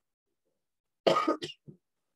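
A man coughs about a second in: one short cough followed by a smaller second one.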